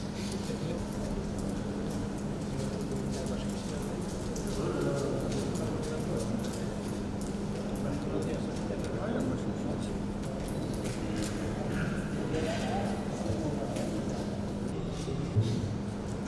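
Indistinct voices murmuring around a meeting hall over a steady low hum, with scattered light clicks and paper rustles as ballots go into a wooden ballot box, and one sharper knock near the end.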